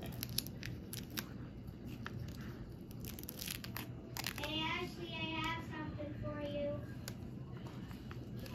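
Faint crinkling and tearing of thin plastic film being picked and pulled off machine embroidery on fleece, with small scattered clicks through the first few seconds. A faint voice is heard from about four to seven seconds in.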